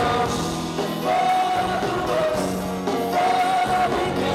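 Live pop-rock band playing, with keyboard and drums under a sung melody that holds long notes, about a second in and again near the end.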